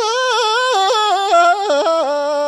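Tibetan folk singing: a single high voice, unaccompanied, holding notes that step up and down with quick ornamental turns and breaks between them.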